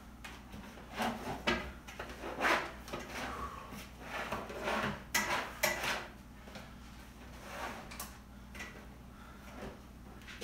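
Irregular knocks, clatters and rustles of equipment and household items being handled and set down, mostly in the first six seconds, then quieter.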